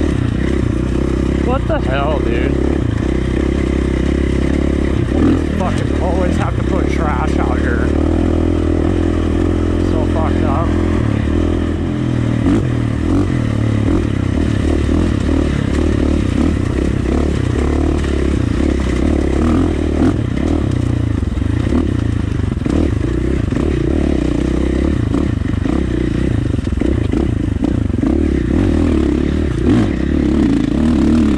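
A 2019 KTM 450 dirt bike's single-cylinder four-stroke engine running at a fairly even throttle, heard from a helmet-mounted camera. Rattling and scraping come from the bike working over a rocky trail.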